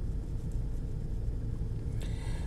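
A steady low rumble of background noise with no clear pitch or rhythm.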